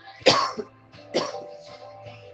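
A person coughs twice, about a second apart, the first cough the louder, over background music.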